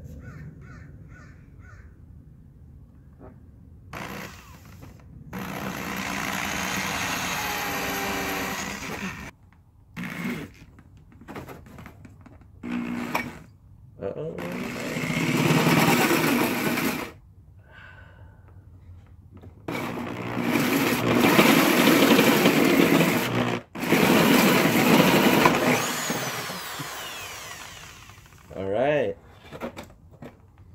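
Cordless drill running a hole saw through a plastic motorcycle fairing, cutting in a series of start-stop bursts of one to four seconds with short pauses between. Near the end the drill spins down with a falling whine.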